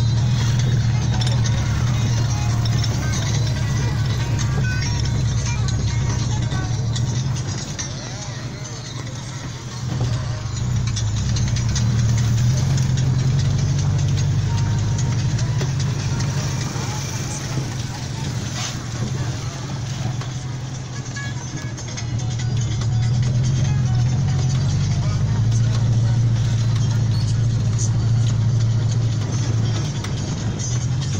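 Car interior sound while driving slowly on a rough unpaved road: engine and road noise, with music and a voice also playing. The sound drops quieter twice for a few seconds.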